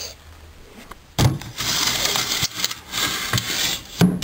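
Handling noise: a sudden bump about a second in, then close, loud rubbing and rustling that runs on, like a handheld camera's microphone being rubbed as it is swung about.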